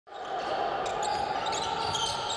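Basketball being bounced on a hardwood court during live play, a few bounces over the steady background noise of a large arena.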